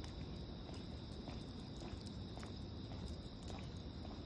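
A faint, steady high-pitched trilling of insects, with a few scattered faint clicks over a low background rumble.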